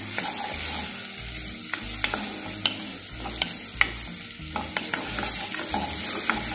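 Chopped onions sizzling in oil in a clay pot, stirred with a wooden spoon: a steady high sizzle with scattered sharp clicks of the spoon against the pot. The onions are softening and turning translucent.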